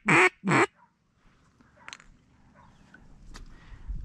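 Duck call blown in two short, loud quacks falling in pitch at the start, the end of a four-quack series. After that only faint background.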